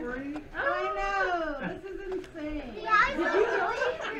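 Indistinct talking from several people, with a long high-pitched vocal exclamation about a second in.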